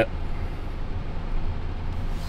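Steady low hum of a Chevrolet car's engine and road noise, heard inside the cabin while driving.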